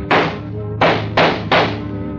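Four radio-drama gunshot sound effects over a held music chord: one right at the start, then three in quick succession from just under a second in.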